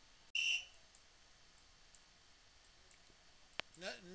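A short high electronic beep, about a third of a second long, from the computer chess program as a piece is moved on the board. Faint mouse clicks follow, and there is a sharper click just before the end.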